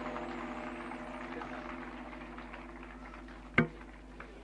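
Santoor strings left ringing as the piece ends, their held notes fading away steadily. A single sharp click comes about three and a half seconds in.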